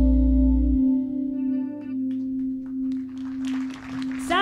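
A band's final held chord ringing out and slowly fading, with the bass cutting off about a second in. A few scattered hand claps near the end.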